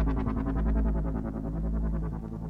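Synthesizer music: a fast, evenly pulsing synth line over a deep bass drone, its upper pulses thinning out in the second half.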